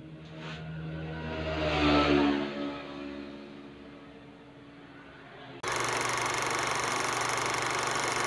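A motor vehicle's engine passes, growing louder to a peak about two seconds in and then fading with a slight drop in pitch. A little over five seconds in, a loud, steady noise starts abruptly and holds.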